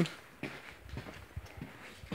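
Quiet room tone with a few faint, short knocks and scuffs.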